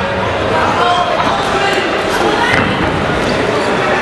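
Shouting voices echoing in a large hall, with several dull thuds of gloved punches and kicks landing during a kickboxing exchange.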